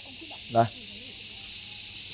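A steady high-pitched hiss with faint steady whistle-like tones in it, constant throughout, under one short spoken word about half a second in.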